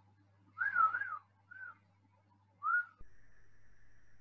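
Three short whistled notes at about the same high pitch: a wavering one about half a second in, a brief one, then a rising one near the three-second mark. A faint steady tone and hiss come in just after.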